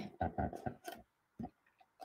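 Light taps and clicks of hands and fingernails on a small painted wooden crate as it is pressed and handled: a quick run of about five in the first second, one more about halfway through.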